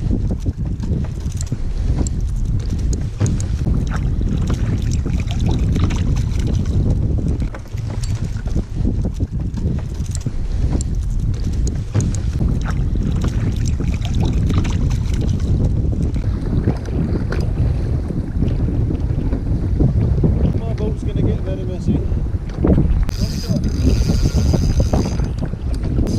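Wind buffeting the microphone with water slapping against a kayak, with scattered knocks and splashes. A short high-pitched whir comes near the end.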